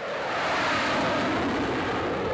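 A jet fighter's engines running as it comes in and touches down: a steady rushing noise that swells in at the start and then holds level.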